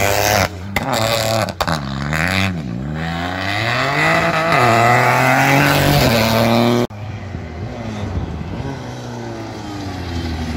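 Rally car engine revving hard, its pitch climbing and dropping again and again with throttle and gear changes. About seven seconds in it cuts off abruptly and a quieter car engine takes over.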